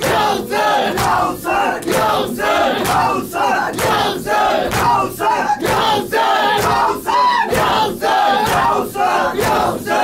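A group of men chanting a noha in unison, over a steady beat of sharp slaps from hands striking chests in matam.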